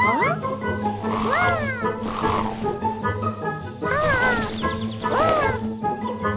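A cartoon baby dragon's voice, three short calls that rise and then fall in pitch, over light children's background music.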